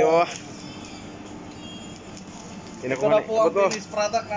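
A person's voice at the start and voices talking again near the end, with steady background room noise in between.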